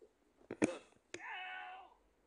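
A few short clicks, then a brief high-pitched wavering cry of under a second, near the end.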